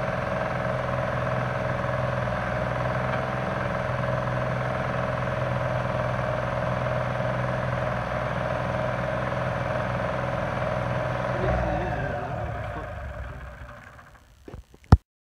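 Timberjack 225 skidder's engine idling steadily. The note shifts briefly about eleven seconds in, then the sound fades out near the end. This is an engine running again after sitting a long time, with its throttle still needing attention.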